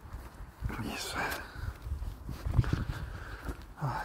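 A dog on a lead giving a short vocal sound about a second in, and another brief one near the end, over low thumps and rumble from walking and handling.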